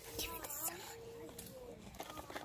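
Quiet children's voices talking, faint and indistinct, with a few brief clicks in the first second.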